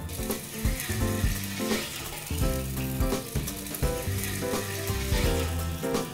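Fish stock, lemon juice and diced tomatoes sizzling and bubbling in a hot frying pan as a pan sauce reduces, with background music carrying a steady beat underneath.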